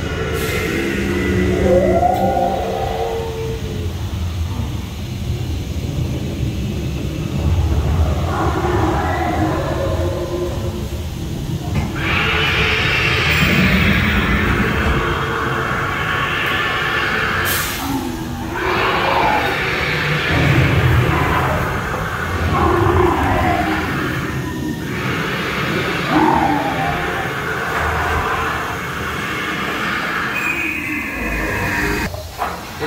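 Dinosaur dark ride's sound effects: a constant low rumble with animal roars and calls rising and falling over it. About twelve seconds in, a louder rushing noise joins, and a short hiss comes a few seconds later.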